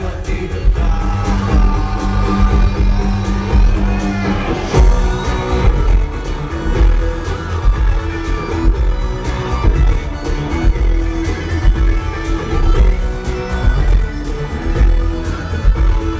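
Live band playing electronic rock at full volume, with electric guitar over a driving dance beat and heavy kick drum, heard from among the audience in a large hall. The beat drops back in with a crash about five seconds in.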